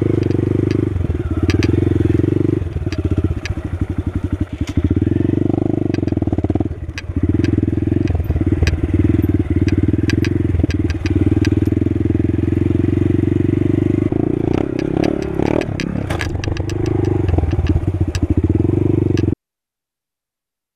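Honda Grom's 125 cc single-cylinder four-stroke engine running under way on a dirt trail, the throttle easing off and picking back up several times, with scattered sharp clicks over it. The sound cuts off abruptly just before the end.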